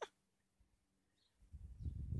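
Faint, high, short chirps of distant birds over near silence. About a second and a half in, a low, uneven rumble on the microphone starts and becomes the loudest sound.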